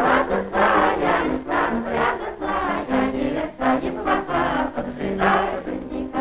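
A mixed choir of young voices singing a song together with piano accompaniment.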